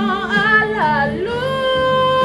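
A woman singing a Spanish-language Christian worship song over instrumental accompaniment. Her voice slides down about a second in, then rises into a long held note.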